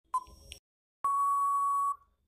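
Quiz countdown-timer sound effect: one short beep for the last second of the count, then about a second in a long steady beep that signals time is up, cutting off suddenly.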